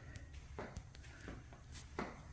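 Soft footsteps of a person walking across a carpeted floor at a steady walking pace, a few steps about two-thirds of a second apart, the last one near the end the sharpest.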